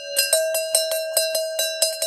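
A bell-like chime struck over and over, about five strikes a second, ringing on one steady pitch. It sounds like a transition sound effect laid in by the editor.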